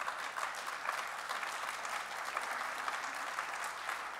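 Audience applauding steadily in a hall.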